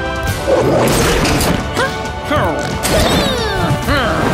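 A cartoon crash sound effect just after the start, followed by a run of high, squeaky vocal sounds that slide downward in pitch, over faint music.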